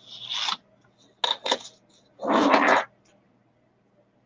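Handling noise of a metal chain necklace being rubbed and shifted in the hands: short rasping rubs with a few light clicks, in three brief bursts, the loudest a little over two seconds in.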